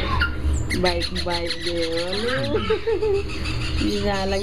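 Parrots squawking and calling, mixed with people's voices.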